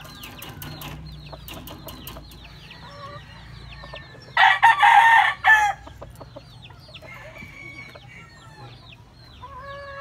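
A rooster crows once, loud and just over a second long, about four and a half seconds in. Short, high, falling peeps repeat throughout behind it.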